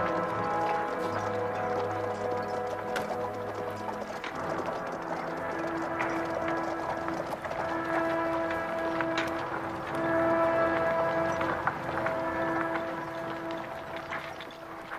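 Orchestral film score playing slow, held notes, deep brass giving way about four seconds in to higher sustained notes that swell and fade, over the faint clip-clop of horses' hooves.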